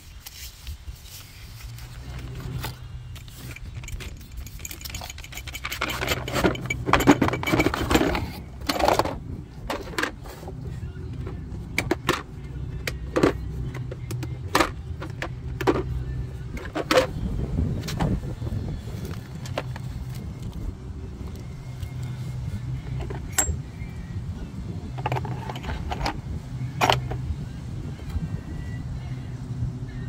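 Unpacking a disc brake caliper tool kit: cardboard packaging rustling and being handled, then a plastic carrying case and its metal pieces giving a string of sharp clicks and clinks, over a steady low hum.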